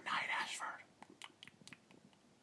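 A man whispering briefly, then a few faint clicks.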